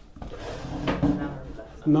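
Quiet, indistinct speech, with a louder voice starting right at the end.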